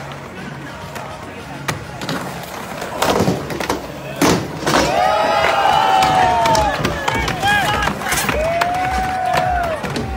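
Skateboard rolling on asphalt with a couple of sharp board clacks a few seconds in. Then from about halfway through, a crowd of onlookers shouting and cheering, with one long drawn-out yell near the end.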